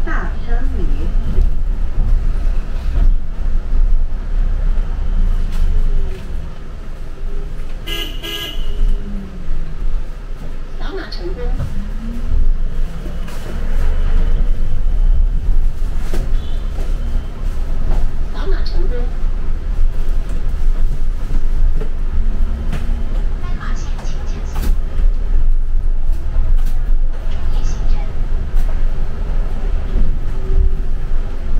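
Cabin sound of a moving city bus: a steady low rumble from the drivetrain and road, with scattered bits of voices. About eight seconds in there is a brief high toot.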